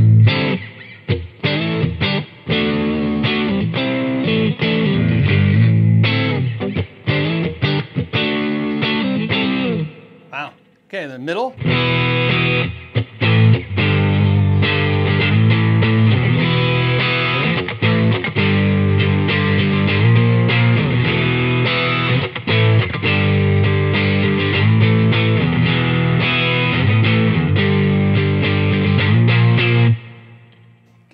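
Squier 40th Anniversary Stratocaster electric guitar played through a PRS Sonzera amp on its overdrive setting with the bright switch on, starting on the neck pickup: continuous overdriven playing, with a brief break about ten seconds in before it picks up again.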